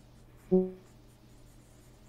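A pause in conversation: faint room tone, broken about half a second in by one brief voiced syllable, like a short 'mm'.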